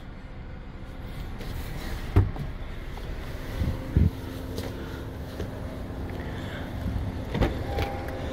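A person climbing out of the driver's seat of a 2021 Honda Civic: a few muffled knocks and handling sounds from the door and body, the clearest about two and four seconds in, over a steady low hum of the car running.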